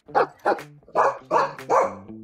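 Dog barking, about five barks in quick succession, with faint background music underneath.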